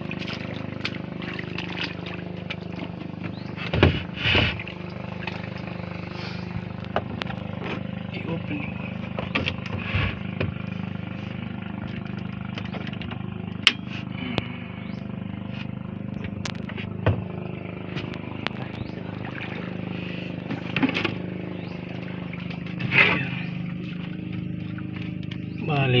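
Small air-cooled boat engine idling steadily, with a few sharp knocks and clatters from handling things in the boat.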